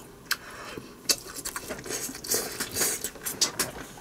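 A person chewing a mouthful of bacon fried rice: soft mouth sounds with several small clicks spread through.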